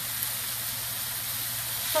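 Steady sizzle of frying: raw hamburger patties in a hot cast iron skillet and french fries frying in a pot of oil.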